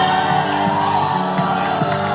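Live rock band playing an instrumental passage of a song, sustained chords held over a steady bass, heard from the audience in a club.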